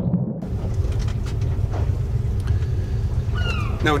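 A boat's motor running at speed across the water, a steady low rumble.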